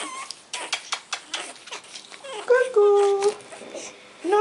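Pug puppies scuffling on the playpen mat, with a run of small clicks and scratches. About three seconds in, a short held whine lasts about half a second.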